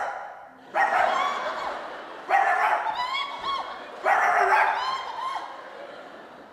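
Voices imitating a dog barking in three bursts of about a second each, roughly a second and a half apart, after a sudden loud sound right at the start.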